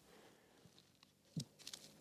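Near silence in a pause between phrases, with one brief faint sound about one and a half seconds in and a few soft ticks just after.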